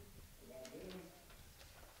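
Near silence with room tone, and a faint, low cooing, like a pigeon's, from about half a second in to about a second in.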